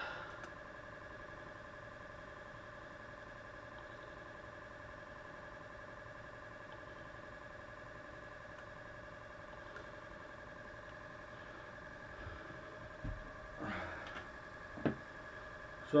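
A faint steady hum of several even tones, with a few soft knocks and one sharp click near the end as pliers work a hook free from a small northern pike.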